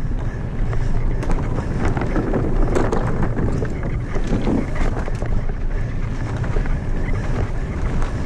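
Mountain bike descending a dirt singletrack at speed: wind buffeting the bike-mounted camera's microphone over the rumble of tyres on dirt and rock, with many sharp rattles and clicks from the bike. Around the middle the tyres roll across a wooden plank bridge.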